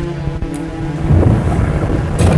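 Film soundtrack: tense score with steady held notes over a deep rumble, which swells into a low boom about a second in.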